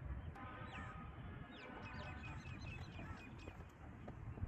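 A bird calling a quick series of short, high chirps, about five a second, starting a little before halfway and running for about two seconds, over a steady low rumble.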